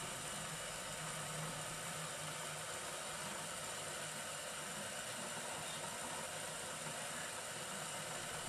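New Matter MOD-t 3D printer running mid-print: a steady mechanical whir as its motors drive the bed back and forth under the nozzle, with a low hum that is stronger in the first two seconds.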